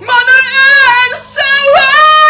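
A singer's voice holding high sung notes with vibrato, in a rock-ballad vocal cover; a brief break about one and a half seconds in, then the voice rises into a new held note.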